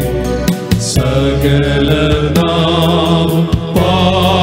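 A male vocal group singing a Christian worship song together in harmony through microphones, over instrumental backing with a steady bass and occasional drum hits.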